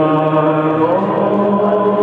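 Male singer holding long, sustained sung notes with no clear words, moving to a new note about a second in, over acoustic guitar.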